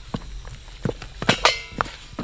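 Wooden paddle working stiff ubugari (cassava dough) in a metal basin: a few irregular knocks and thuds of the paddle against the dough and the basin.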